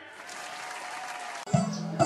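Applause, as an even clatter of clapping that cuts off abruptly about a second and a half in, when music starts with a held low note.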